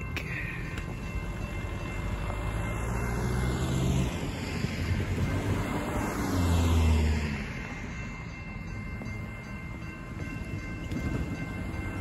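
Cars driving across a railroad grade crossing, tyre and engine noise rising as each passes; the loudest pass comes about six to seven seconds in, with another vehicle approaching near the end.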